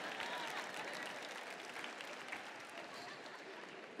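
Audience applauding, the clapping fading away steadily, with a few faint voices in the crowd early on.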